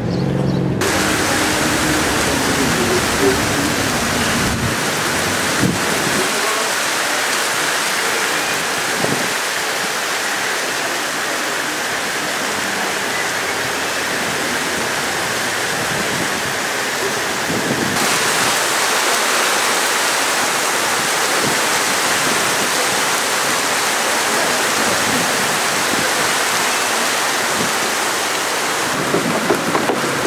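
Heavy rain pouring onto paved ground, a steady dense hiss with no let-up.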